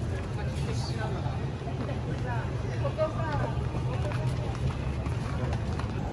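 Street ambience: passers-by talking faintly over a steady low rumble.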